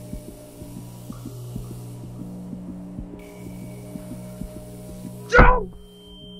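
A low, steady sound-design drone of several held tones, dotted with faint ticks. About five and a half seconds in, a sudden loud hit sweeps down in pitch and is the loudest sound.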